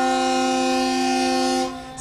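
A tugboat's horn sounding one long, steady blast that cuts off about one and a half seconds in.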